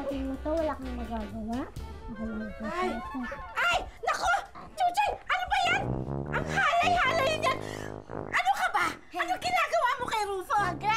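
Excited, overlapping voices over background music.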